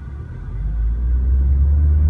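A Mitsubishi Lancer GT-A's 2.0-litre naturally aspirated four-cylinder engine, heard from inside the cabin, pulling away from a stop in first gear with the CVT in manual paddle-shift mode. Its low drone grows louder and rises steadily in pitch from about half a second in as the revs climb.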